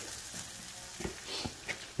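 Steaks sizzling on a charcoal grill, a steady hiss with a few faint crackles and clicks about a second in and near the end.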